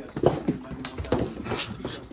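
A Rhodesian Ridgeback's paws running along a wood-floored hallway with rug runners, mixed with a thrown ball bouncing. It is a quick, irregular series of thumps and taps, a few a second.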